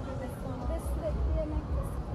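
A woman's voice talking, over a low background rumble.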